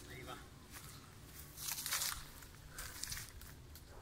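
Faint rustling and crackling of dry leaves and twigs in a few short bursts, the loudest about two seconds in.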